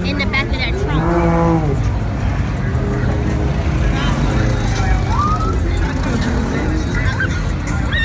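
Steady low rumble of vehicles running on the street, with people shouting over it; one long shout about a second in.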